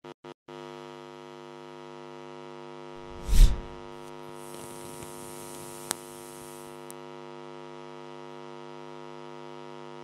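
Outro sound design: a steady electronic drone that sets in about half a second in and holds, with a loud deep whoosh about three and a half seconds in, followed by a fizzing hiss and a sharp click as the logo animation plays.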